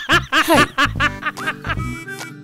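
A man's short laughing exclamation, 'hey', then background music comes in about a second in with steady held notes.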